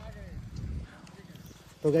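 Low rumbling noise on the microphone of a handheld camera, loudest in the first second, then a man's voice starts loudly near the end.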